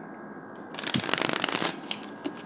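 Tarot cards being shuffled: a dense, rapid run of small clicks starting just before the middle and lasting just over a second.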